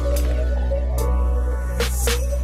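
Electronic background music with a steady deep bass and sustained tones, and short hissy sweeps about once a second.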